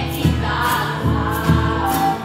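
Live stage music: several voices singing together over a steady beat of about two thumps a second.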